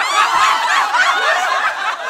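Canned audience laughter, many voices laughing together as a laugh track on the punchline.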